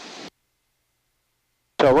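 Near silence: a faint hiss for a moment, then the sound drops out entirely, with no engine or water noise, until a man's voice starts near the end.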